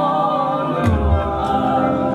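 Live gospel praise singing: a lead voice holds long, wavering notes over a group singing along, with band accompaniment. The low beat drops out at the start and comes back about a second in.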